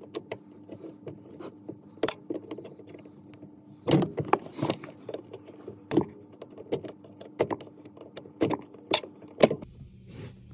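Screwdriver prying and tapping at the steel pin joining the brake pedal to the booster pushrod: irregular sharp metallic clicks and scrapes, with a busier cluster about four seconds in, over a faint steady hum.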